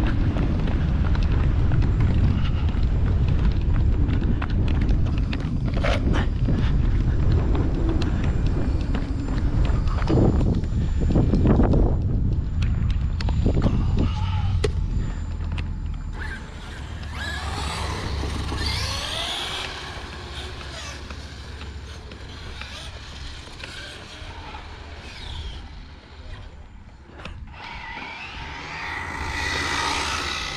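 Radio-controlled car driving fast on asphalt, heard close up from low on the ground: a heavy rumble of wind and tyres with scattered clicks through the first half. After that it is quieter, with whines that rise and fall as the cars speed up and slow down.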